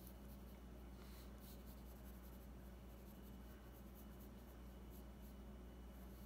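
Wooden graphite pencil sketching on paper: faint, intermittent scratching strokes over a low steady hum.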